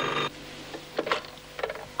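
A desk telephone's bell ringing, which cuts off shortly after the start. It is followed by a few faint knocks as the red handset is picked up.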